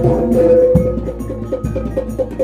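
Live East Javanese jaranan gamelan music: low drum strokes under a quick, even clatter of small percussion, with a long held note above.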